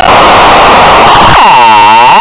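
Loud, clipped static-like noise from heavily distorted, effect-processed cartoon audio. In the second half a sweeping whoosh dips down and rises back up.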